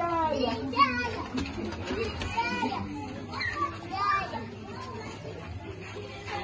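Children's voices calling and chattering, high-pitched, loudest in bursts during the first four seconds.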